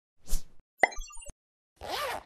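Animated-intro sound effects: a soft puff, then a sharp pop followed by a quick scatter of short high blips and a click, and a whoosh swelling up near the end.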